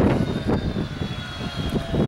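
Steady low engine rumble with a faint high whine held through most of it.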